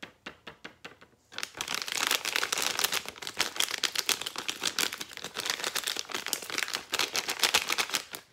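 A thin plastic bag being handled: first light, evenly spaced taps about five a second as the bag is flicked over a jar to shake out the last glitter, then from about a second and a half in a loud, dense crinkling as the emptied bag is crumpled and folded.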